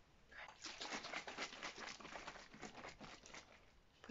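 Close-up crinkling and crackling of something handled in the hands, a dense run of small crackles starting about half a second in and easing off near the end.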